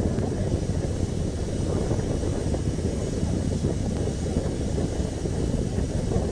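Distant, steady low rumble of the Falcon 9 first stage's nine Merlin engines during ascent, without breaks or changes.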